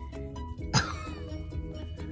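One short, forced cough about three-quarters of a second in: a person faking a sick horse's cough. It sits over background music of steady held notes.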